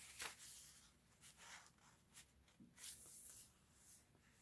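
Near silence with a few faint paper rustles and slides as sheets of paper in a handmade paper journal are handled and a page is turned.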